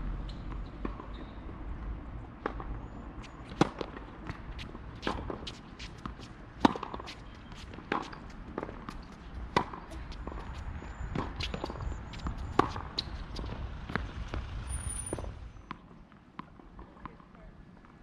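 Tennis rally on a hard court: sharp pops of the racket strings striking the ball and the ball bouncing, roughly one every second or so, over a low rumble. The hitting stops a couple of seconds before the end.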